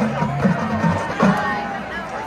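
Marching band playing with bass drum and percussion. The low band notes break off a little past halfway, over crowd voices.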